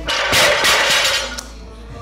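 A loaded deadlift barbell with iron plates coming down onto a wooden lifting platform: a heavy thud and a loud clatter of plates that rings for about a second and then dies away.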